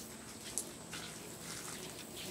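Faint trickle of a small backyard waterfall water feature, with a few soft ticks.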